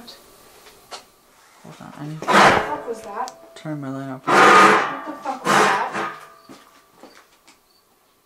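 Amplified breath-like hissing: three loud breathy bursts about two, four and a half, and five and a half seconds in, with a short low voiced sound between the first two.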